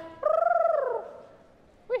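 A single high-pitched vocal cry lasting under a second, rising slightly and then sliding down in pitch.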